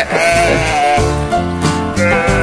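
Goats bleating, over background music.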